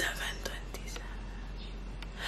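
Faint whispering close to the microphone, opening with a short breathy burst, with a few light clicks over a low steady hum.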